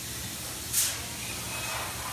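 A tube of RTV silicone being squeezed around a pump shaft seal, giving a steady hiss with one short, louder spurt a little under a second in. A steady low hum runs underneath.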